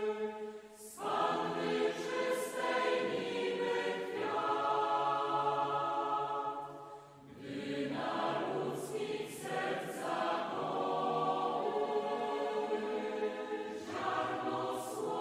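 A choir singing in long, sustained notes, with short pauses between phrases about a second in and about seven seconds in.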